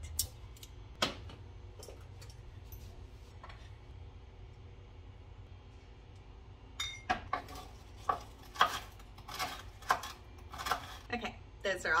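Kitchen clatter at the stove: after a few seconds of only a steady low hum, a run of irregular sharp knocks and clinks of pans, utensils and containers being handled, with a single click about a second in.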